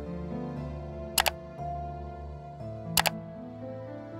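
Soft, slow background music with long held notes, cut twice by a sharp double click, about a second in and again about three seconds in: mouse-click sound effects of an animated subscribe button and notification bell being clicked.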